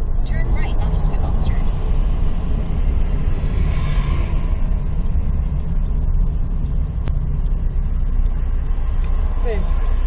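Steady low rumble of engine and road noise inside a moving vehicle, with a hiss that swells and fades about four seconds in as something passes.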